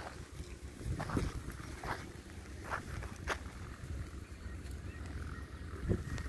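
Footsteps crunching on dry red soil and twigs, about one step a second, over a low rumble of wind on the microphone.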